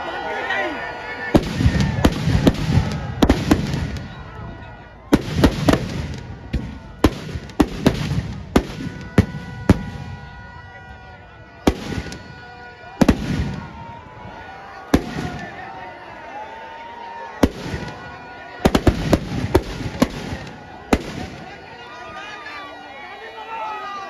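Firecrackers packed in a burning Ravana effigy going off as bursts of loud bangs in rapid clusters, separated by short lulls.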